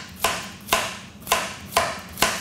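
Chef's knife slicing through yellow squash and striking a cutting board: four quick chops, about two a second.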